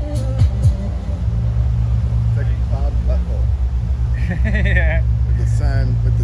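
A dance-music beat stops about a second in, leaving a loud, steady low rumble with a few brief, wordless voice sounds over it.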